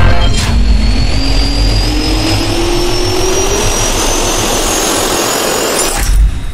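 Jet engine spooling up, as a sound effect: a loud, steady rushing noise with a whine that rises slowly and evenly in pitch.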